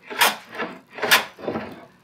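Metal hand plane shaving cured epoxy off a walnut slab: two strong cutting strokes about a second apart, then a weaker one, each a rasping scrape. The epoxy comes off as chips that spray up like shrapnel.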